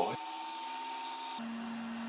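Steady background hiss with a faint high whine. About one and a half seconds in it changes abruptly to a duller hiss with a low steady hum.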